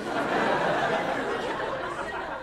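A comedy club audience laughing at a punchline. The laughter comes up at once and then slowly dies away.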